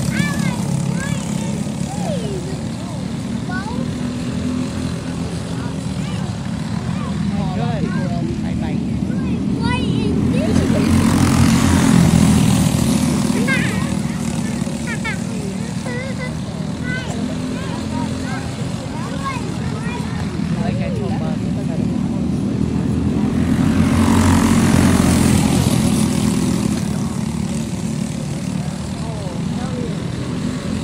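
Racing go-kart engines buzzing as the karts lap the track, swelling louder as the pack passes close about twelve seconds in and again near twenty-five seconds, with the pitch rising and falling as drivers throttle through the corners.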